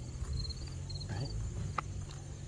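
Crickets chirping in short, high trills that repeat a few times a second.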